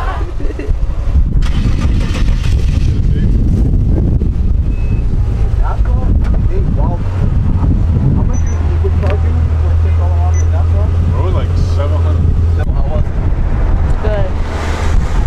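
Power-folding hard top of a silver convertible running its fold cycle, a steady low hum that cuts off suddenly near the end.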